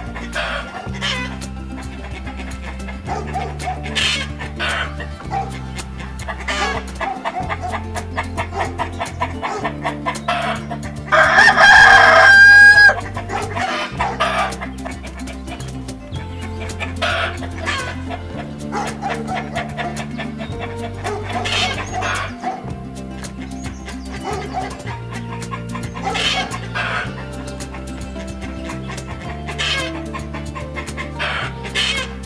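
A rooster crows once, loudly, about eleven seconds in, for about two seconds, with shorter chicken calls and clucks scattered through the rest. Background music with steady bass notes plays underneath.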